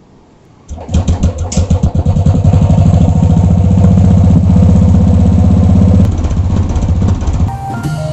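Royal Enfield single-cylinder motorcycle engine starting after about a month without being run. It catches about a second in with uneven firing, then settles into a loud, steady idle with a rapid even beat that eases a little near the end.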